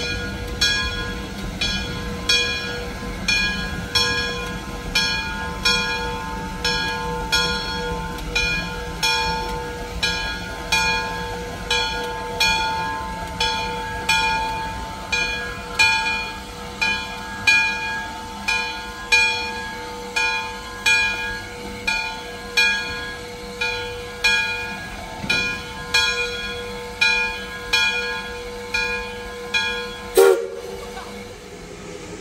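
Steam locomotive bell ringing steadily, about one and a half strikes a second, each strike ringing on, as the Lima-built Shay geared locomotive Dixiana moves slowly along. A low rumble from the locomotive lies under the first part and fades.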